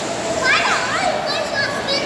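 Children playing in a swimming pool: high-pitched calls and squeals over a steady background din of voices.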